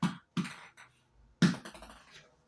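Small mallet hitting a ping-pong ball on a hard floor: a few sharp knocks, the loudest about one and a half seconds in.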